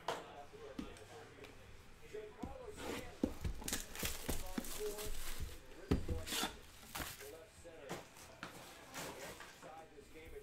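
A cardboard trading-card box being handled: a run of irregular taps, scrapes and knocks as it is picked up and turned over, the loudest knock about six seconds in. A faint voice sounds now and then underneath.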